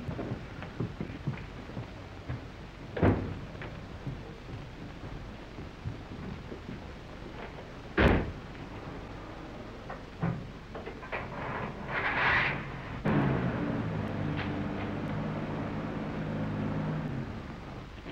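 Two sharp thumps, then near the end a truck engine running steadily for several seconds, all over the constant hiss and crackle of an old optical film soundtrack.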